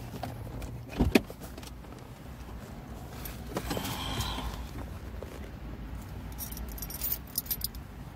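Jangling, clicking handling noise inside a car: a sharp clatter about a second in, a rustle of the plastic salad bag around four seconds, and more clicks near the end, over a low steady rumble.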